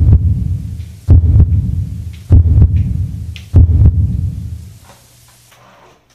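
Four deep booms about 1.2 seconds apart, each striking suddenly and dying away over about a second, from a dramatic boom sound effect laid over the scene.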